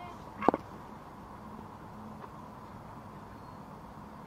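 Quiet open-air cricket ground ambience, steady and low, with one short sharp sound like a clap or call about half a second in.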